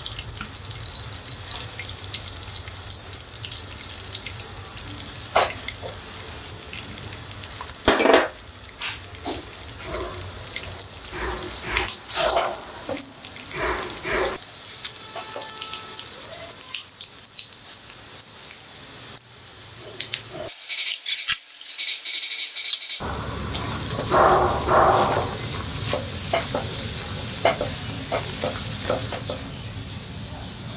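Ghee sizzling in a nonstick frying pan as jaggery melts into it and bubbles, with a silicone spatula stirring and scraping the pan in short repeated strokes over a steady sizzle.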